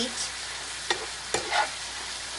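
Ground meat sizzling as it browns in a frying pan, with a spatula stirring and breaking it up. Two sharp scrapes of the spatula on the pan come about a second in, over the steady sizzle.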